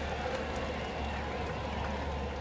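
Baseball stadium crowd ambience: a steady, even murmur of the crowd with no single voice standing out.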